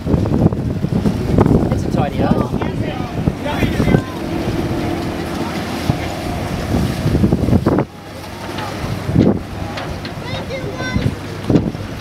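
Wind buffeting the microphone over the low rumble of a yacht motoring past, with snatches of people's voices. A steadier engine hum runs for a few seconds and stops suddenly about eight seconds in.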